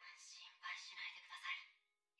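Quiet, soft-spoken dialogue from the anime playing on the stream.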